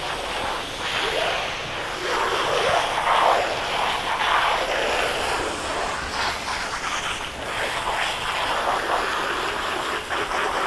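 Water from a hose spray nozzle hissing and splashing as it rinses a horse's coat and legs, running off onto the wet wash-rack floor: the final plain-water rinse after shampoo and conditioner. The sound swells and falls as the spray moves over the horse.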